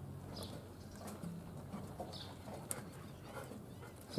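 Quiet outdoor background with two short, high bird chirps, one about half a second in and one about two seconds in.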